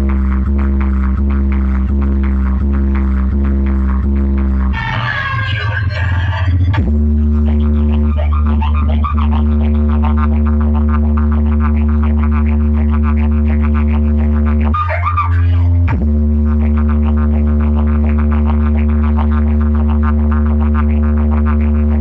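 Electronic DJ music dominated by a loud, sustained buzzing bass drone, played through a stacked DJ speaker rig. The drone pulses regularly at first and gives way twice to a short, busier burst, about five seconds in and again near the fifteenth second.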